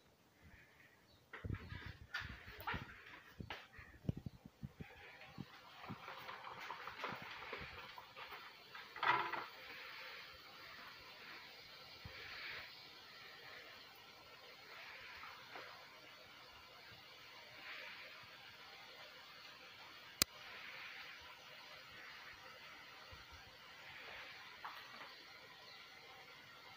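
Fry jack dough, the first test piece, frying in hot oil in a skillet: a faint, steady sizzle that sets in about five seconds in, after a few knocks of handling. A single sharp click comes about twenty seconds in.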